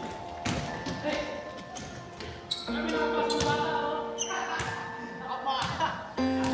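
Basketballs dribbled on an indoor court floor, a scattering of sharp bounces, over background music and voices.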